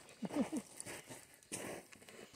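Scuffing and rustling of feet on dry gravelly ground and brush, loudest briefly about a second and a half in, after a short murmured voice sound.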